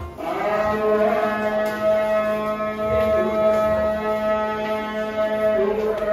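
A muezzin's dawn call to prayer (adhan): a man's voice holding one long, drawn-out note, with ornamental turns about three seconds in and again near the end.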